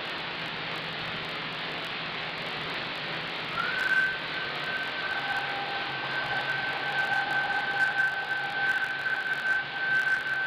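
Radio receiver hiss, with a whistling tone that glides up briefly about three and a half seconds in and then holds steady, joined by a fainter lower tone a second and a half later: a meteor's radio echo, its ionised trail reflecting a distant transmitter into the receiver as the meteor crosses the sky.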